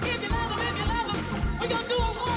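Live gospel song: a lead singer's voice with vibrato over a full band with a drum beat.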